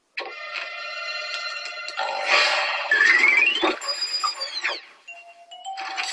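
Cartoon music and comic sound effects: steady ringing, bell-like tones at first, then a tone that glides upward about three seconds in, followed by high tones that fall away, and a quieter held low tone near the end.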